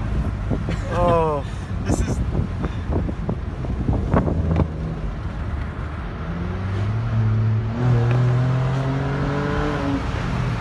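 Muffler-deleted exhaust of a 2013 Ford Explorer's 3.5-litre V6, a low drone at first, then rising steadily in pitch from about six seconds in as the engine accelerates through a gear. A short voiced exclamation about a second in.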